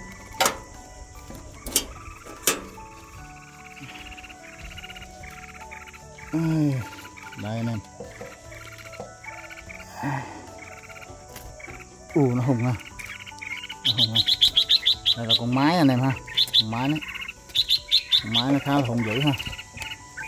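A few sharp metallic clicks from a nest-box latch in the first couple of seconds. From about two-thirds of the way in, red-whiskered bulbuls give loud, rapid, high chirps, several a second, over background music with a singing voice.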